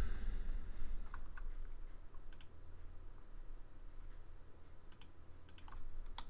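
A handful of separate clicks and taps on a computer keyboard and mouse, a few seconds apart, over a faint steady low hum.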